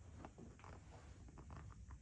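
Near silence: room tone with a few faint, small ticks.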